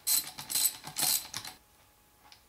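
Socket ratchet clicking in about four short bursts over the first second and a half as it backs out a 17 mm shift detent from the transmission casing, then stopping.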